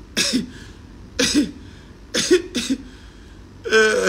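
A man laughing in five loud, breathy bursts about a second apart.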